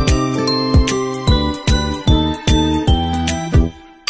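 Background music with a steady beat and bell-like jingling tones, fading out just before the end.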